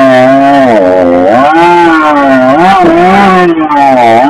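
Husqvarna 562 XP two-stroke chainsaw running flat out while cutting through a log, very loud, its pitch dipping and rising as the chain loads up in the wood.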